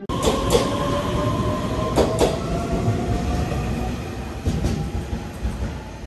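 Electric passenger train running past along a station platform: a steady rumble with a motor whine that rises slowly in pitch, and two pairs of wheel clacks, one near the start and one about two seconds in.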